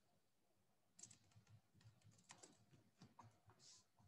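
Very faint computer keyboard typing: a run of light, irregular key clicks starting about a second in, heard over a video-call line.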